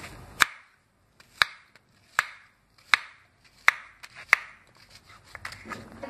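Kitchen knife slicing peeled raw banana on a wooden cutting board: six sharp knocks of the blade reaching the board, about one every three quarters of a second, then a few lighter taps near the end.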